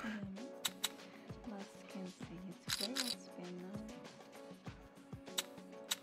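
Faint background music from a live online roulette stream, with a few short clicks scattered through it.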